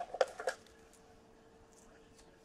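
A few short clicks and rustles of a trading card being handled against its cardboard holder in the first half second, then quiet room tone with a faint steady hum.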